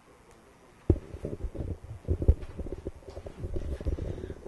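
Microphone handling noise: a run of irregular low thumps and rumbling that starts suddenly about a second in, after a quiet moment of room tone.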